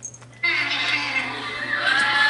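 Young puppies whining and squeaking with thin, wavering high-pitched cries, starting about half a second in, over a steady low hum.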